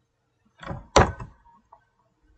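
Two quick clicks on the computer as the query is run, a softer one and then a sharper, louder one about a second in.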